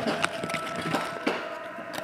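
Trading cards being handled on a tabletop: a series of light taps and slides of card stock as a small pile is gathered up, over a faint steady hum.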